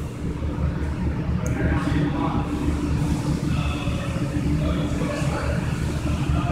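Steady low rumble and hum of background workshop machinery, with a faint click about a second and a half in.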